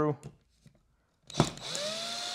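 A Black+Decker cordless drill/driver starts with a click about one and a half seconds in, its motor whine rising and then holding steady as it backs a screw out of a thermostat wall base plate.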